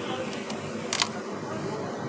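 A glass-door display fridge being opened: one sharp click about a second in, over a steady hum.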